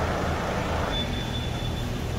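Steady low rumble and hiss of an underground car park, with a faint thin high tone lasting about a second midway.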